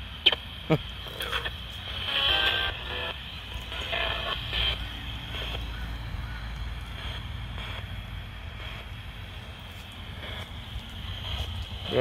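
A ghost-hunting spirit box radio sweeping through stations: a steady static hiss broken by short chopped fragments of broadcast voices and music, over a low rumble.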